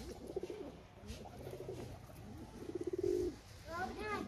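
Domestic pigeons cooing, with a longer, louder coo about three seconds in.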